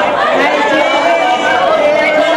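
A group of teenage boys shouting together at close range, many voices overlapping at once.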